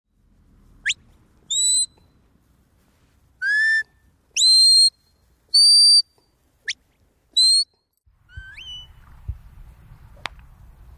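A sheepdog handler's whistle commands to a working dog: about seven short, high whistles in the first eight seconds, some held on one note and some sweeping sharply upward. Near the end comes a softer rising whistle over faint outdoor noise.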